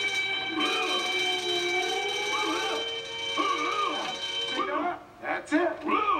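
A cookie-jar burglar alarm going off: a steady high-pitched electronic tone lasting about five seconds, then cutting off, with a voice howling underneath it.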